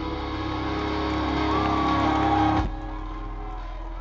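Live rock band with drums, electric guitars, violin and cello playing at full volume, building louder until it cuts off abruptly a little over halfway through. Quieter held notes carry on afterwards.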